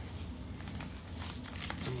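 Plastic wrapping crinkling as it is handled around a plant's sphagnum-moss root ball, the crackles growing busier from about a second in.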